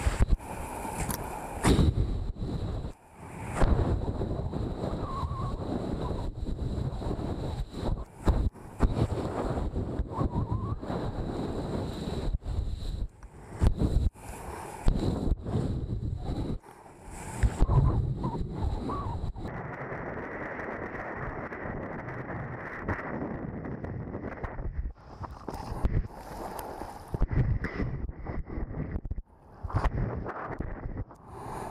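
Wind buffeting an action camera's microphone in uneven gusts, mixed with water rushing and splashing as a kiteboard cuts through choppy sea.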